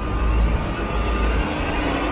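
Trailer soundtrack: a dense low rumble with a faint tone rising steadily beneath it, building tension between lines of dialogue.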